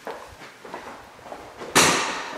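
Light footsteps and small knocks, then a sudden loud bang near the end that rings out and dies away over about a second.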